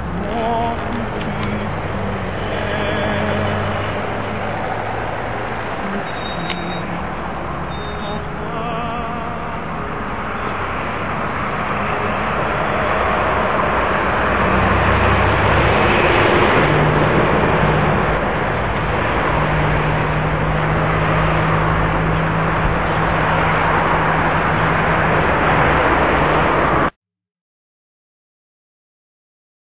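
Steady vehicle noise with a low hum, growing a little louder in the second half and cutting off suddenly near the end.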